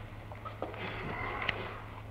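Background noise of an old recording: a steady low hum under a faint hiss, with a few faint clicks and a soft breath-like noise about a second in.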